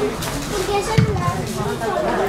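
Shouting voices of teenage footballers calling out across the pitch, with one short thud about a second in.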